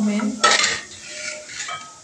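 A knock and a short rustle as a nougat slab wrapped in butter paper is lifted out of a plastic tray, followed by fainter handling noise.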